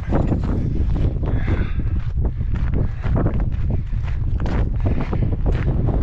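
Wind buffeting a handheld camera's microphone: a loud, continuous low rumble broken by irregular light knocks.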